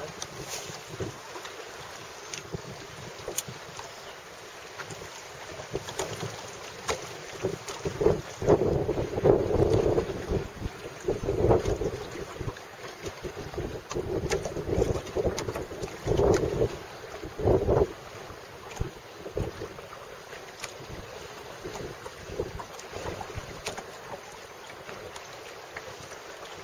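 Wind buffeting the microphone in irregular gusts over choppy water around a small boat, the strongest gusts coming in the middle stretch.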